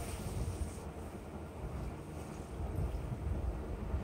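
Foam sponge being pressed and squeezed under water in a glass bowl, under a steady low rumble, with no sharp splashes or knocks.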